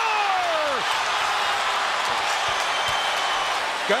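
A sportscaster's drawn-out goal call falls in pitch and trails off within the first second. Steady arena crowd noise from the hockey crowd follows.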